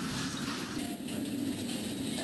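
Steady low noise from a full-scale concrete building being shaken on an earthquake shake table, with the noise changing character about a second in.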